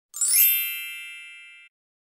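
Chime sound effect for an animated logo intro: a quick upward shimmer that settles into a high ringing chord, fading and then cutting off suddenly at about a second and a half in.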